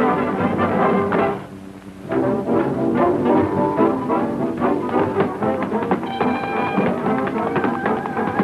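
Brass-led dance band music from an early sound-film soundtrack, dropping away briefly about one and a half seconds in before picking up again.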